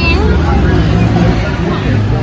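Steady low engine rumble of street traffic, with people talking in the background.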